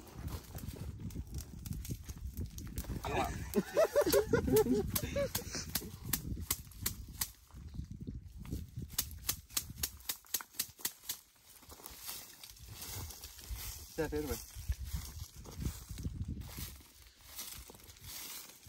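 A bunch of dry burning plant being crushed and beaten out against bare rock: a rapid run of sharp crackles and scrapes in the middle stretch, with short bursts of voices.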